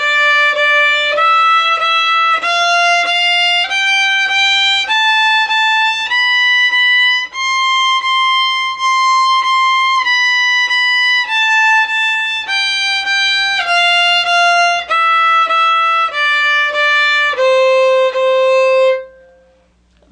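Solo fiddle playing a one-octave C major scale, from C on the A string up to high C on the E string and back down. Each note is bowed twice, the top C is repeated at the peak, and it stops on the low C shortly before the end.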